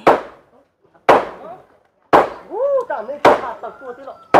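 Hammer blows on the wooden frame of a house being taken apart, a sharp knock about once a second, four in all, with voices talking between them.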